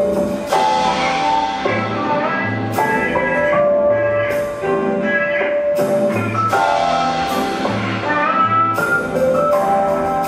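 Rock band playing live without vocals: held melodic notes over bass and drum kit, with several cymbal crashes.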